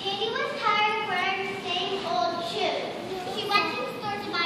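A young child speaking in a high voice, in two phrases with a short pause between them.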